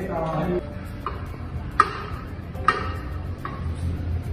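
Hand tools clinking on metal while the subframe-to-chassis bolts are fitted: four sharp metallic clicks with a short ring, evenly spaced a little under a second apart, over a low steady hum.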